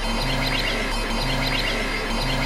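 Experimental electronic synthesizer music: a steady low drone under short held bass notes, with clusters of high chirping glides above, the pattern repeating about once a second.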